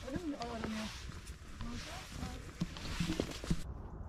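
Faint, brief murmurs of people's voices over a steady outdoor hiss, with a few light knocks like steps on stony ground. The hiss cuts off abruptly near the end.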